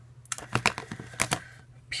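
Plastic makeup tubes and containers clicking and tapping against each other as they are handled in a plastic basket: a handful of light sharp clicks in the first second and a half.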